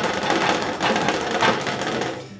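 Paintbrush being beaten rapidly against a hard surface, a fast even rattle of strikes several times a second, to knock the excess odorless paint thinner out of the bristles after cleaning.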